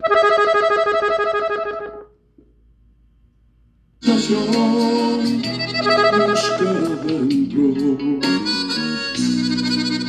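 Gabbanelli three-row diatonic button accordion tuned in E, played in B major: a chord held for about two seconds, a short pause, then from about four seconds in a melody phrase on the treble buttons with bass notes under it.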